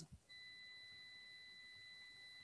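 A faint, steady, high-pitched electronic tone with a fainter higher overtone, starting just after the voice cuts off.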